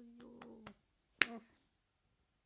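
A woman sings a held note with a few light clicks over it. Then, just past a second in, comes one sharp, loud snap, followed by a brief hum.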